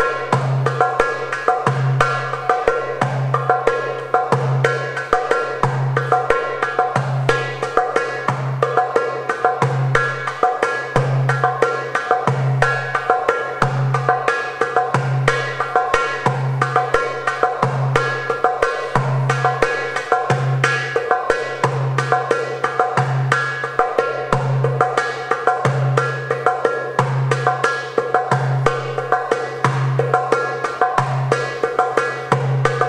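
Darbuka (Arabic goblet drum) played by hand in the maqsoum rhythm, a steady repeating pattern of deep bass 'dum' strokes and sharp, high 'tek' strokes at an even tempo.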